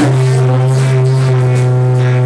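Live blues band holding a single chord: a strong low note and guitar tones above it ring out steadily for about two seconds.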